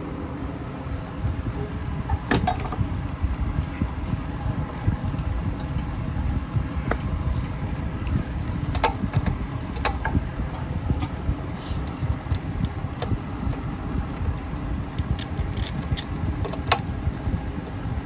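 Scattered metallic clicks and clinks of a wrench and socket working the spark plug out of a small lawn mower engine, coming more often in the second half, over a steady low background hum.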